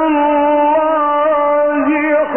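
A male Quran reciter's voice holding one long chanted note in the melodic mujawwad style, wavering slightly and dipping in pitch near the end.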